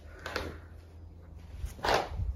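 Fabric curtain being handled and let down, giving two brief soft rustles, the second louder near the end, over a faint low hum.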